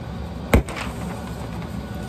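A single sharp knock about half a second in, then faint rustling as a sheet of notebook paper is handled and lifted.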